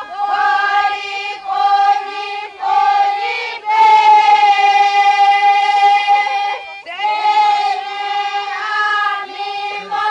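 Kayapó traditional chant: several voices singing together on a high, steady pitch in short phrases, with one long held note from about four to seven seconds in.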